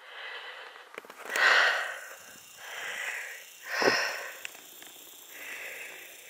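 A person breathing close to the microphone: a run of audible breaths about a second apart, the loudest a little over a second in.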